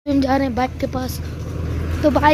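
Tractor engine running with a steady low hum, with a voice over it for the first second.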